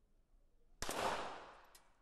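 A single .22 sport pistol shot about a second in, its sound ringing on through the range hall for around half a second. A fainter sharp click follows near the end.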